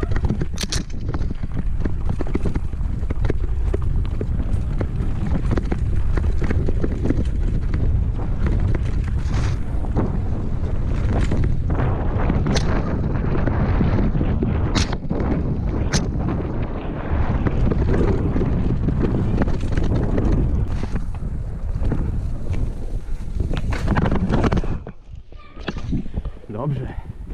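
Wind buffeting an action camera's microphone over the steady rumble and rattle of a mountain bike running fast down a dirt singletrack, with several sharp knocks from bumps in the trail. About a second before the end the riding noise cuts off suddenly as the bike goes down into the grass.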